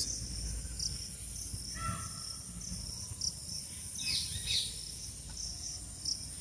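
A steady, high-pitched insect drone of crickets, with a pulsing chirp repeating at uneven intervals. Short bird calls come in about two seconds in and again around four seconds.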